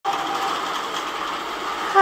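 Longarm quilting machine running steadily, a motor hum with a faint whine.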